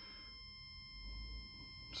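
Megger MFT1721 multifunction tester giving a faint, steady high-pitched tone while its TEST button is held, running a line-to-neutral insulation resistance test.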